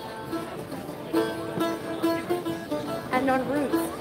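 A lute-like plucked string instrument playing a dance tune, a melody of separate plucked notes, with voices in the background. About three seconds in, a voice rises and falls briefly over the music.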